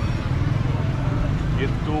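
A vehicle engine idling with a steady low rumble, under faint voices; a man starts speaking near the end.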